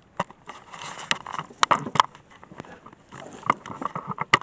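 Handling noise of a small camera being moved and set down on wooden boards: irregular clicks, knocks and rubbing, the sharpest knocks about one and two seconds in.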